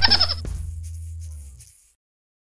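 Cartoon hamster squeak effect: a rapid trill of high squeaks, about a dozen a second, that stops about half a second in. The song's backing music then fades out.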